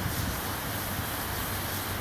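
Steady beach ambience: wind rumbling on the microphone over the continuous wash of breaking surf.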